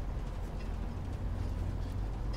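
Steady low rumble of a vehicle running, heard from inside its cabin.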